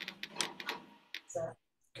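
Light clicking and rattling of a yoga strap's buckle as the strap is adjusted longer, a quick run of small clicks in the first second. A brief voice sound follows about one and a half seconds in.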